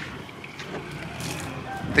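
Low, steady background noise with a few faint rustles, with no distinct sound event.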